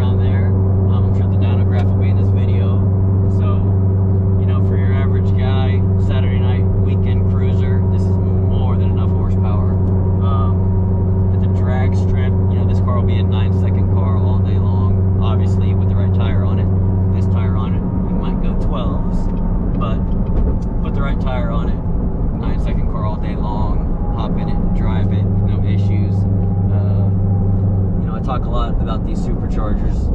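Supercharged 6.2-litre LT4 V8 of a C7 Corvette Z06, built to about 1000 hp, heard from inside the cabin at light-throttle cruise as a steady low drone. About 18 s in the drone gives way to rougher, uneven engine and road noise, and it holds steady again for a few seconds near the end.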